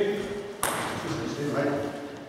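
Men's voices talking between points, with one sharp click of a table tennis ball about half a second in.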